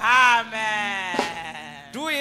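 A voice over a microphone and PA giving a drawn-out wordless call: a short falling cry, then one long held note that slowly drops in pitch.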